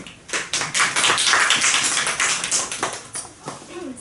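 A small group of people clapping. The applause starts about a third of a second in, is strongest in the middle and dies away near the end.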